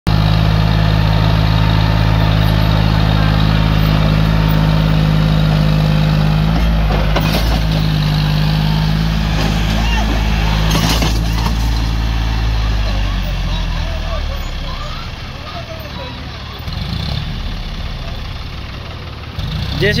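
A John Deere tractor's diesel engine labours steadily under load while pulling a soil-laden trailer up a dirt ramp. A few knocks come near the middle, and the engine sound fades over the last third as the tractor pulls away.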